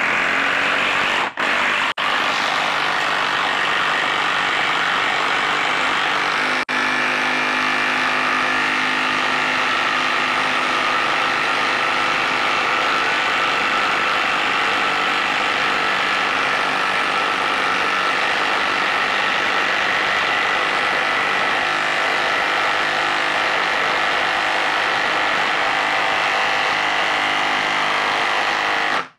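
Milwaukee 2962-20 half-inch mid-torque impact wrench hammering steadily as it drives an 8-inch by 5/16-inch lag screw into a log under heavy load. There are brief breaks about a second and two seconds in, and again around seven seconds.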